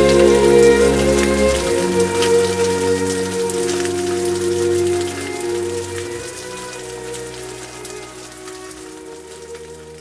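Steady rain with many small drops pattering, mixed with soft music holding long sustained notes. Both fade out gradually over the second half.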